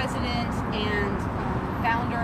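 A woman talking over a steady rumble of road traffic from an elevated highway.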